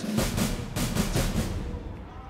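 A low, timpani-like drum roll of rapid, even strokes, fading out toward the end.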